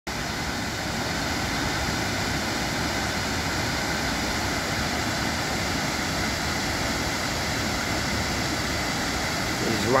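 A wide waterfall pouring over a rock ledge: a steady, even rush of falling water.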